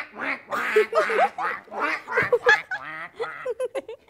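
Girls' voices in rapid, short pitched syllables, jumping up and down in pitch.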